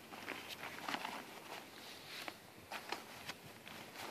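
Nylon carry bag rustling and scraping as a folded tent cot is pulled out of it, with several sharp clicks and knocks from the cot's metal frame being handled.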